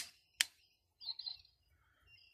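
Two sharp metallic clicks about half a second apart from a stainless-steel multitool as its handles are swung round and the pliers head unfolds and opens. A faint short high chirp follows about a second in.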